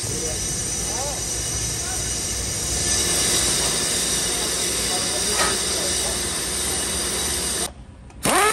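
JBC brake lathe running, its cutting tool skimming a brake rotor: a steady hissing scrape that grows brighter about three seconds in and cuts off abruptly near the end.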